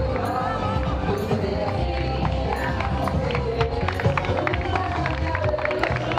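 Music playing with crowd noise and scattered hand clapping from spectators; many short sharp claps run through it.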